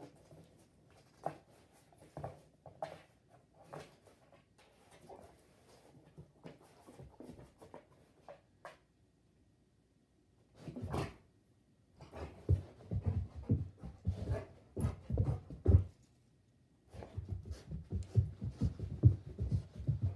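A golden retriever nosing at a cardboard box: at first light scattered rustles and clicks, then after a short pause three stretches of loud, quick sniffing and snuffling close by.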